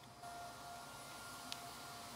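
Faint room noise with a faint steady tone and one small click about a second and a half in.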